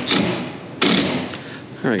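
A cordless driver runs a screw into thick sheet metal: a sudden burst about a second in that fades out as the screw seats tight.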